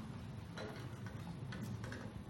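Quiet lecture-hall room tone: a steady low hum with a few faint, irregular clicks, about half a second in and near the end.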